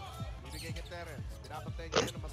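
A basketball being dribbled on a hardwood arena court, heard faintly through the game broadcast audio, under quiet background music.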